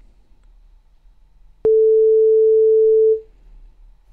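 A single steady electronic beep, one mid-pitched pure tone lasting about a second and a half, starting abruptly with a click about one and a half seconds in. It is the signal tone of an exam listening recording, marking the start of the replayed item.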